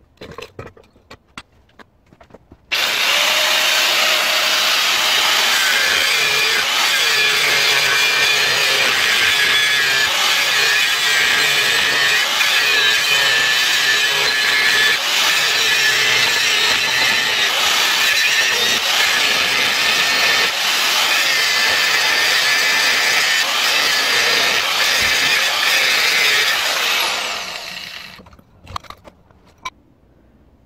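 Angle grinder with a cutting disc slicing through the steel shell of a sealed fridge compressor. It is a loud, steady grinding that starts suddenly a few seconds in and winds down near the end.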